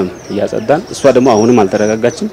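A man speaking in an interview, his voice close to the microphone with short pauses between phrases.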